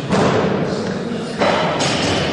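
Loaded barbell and its weight plates being handled on a weightlifting platform, giving two heavy thuds, one near the start and one about a second and a half in, that ring on in a large reverberant hall.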